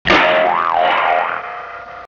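Cartoon "boing" sound effect: a springy twang that starts suddenly, wobbles up and down in pitch twice and fades away near the end.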